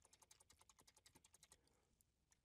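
Near silence with very faint, rapid, evenly spaced computer keyboard key presses that stop about one and a half seconds in, repeatedly nudging a selected object.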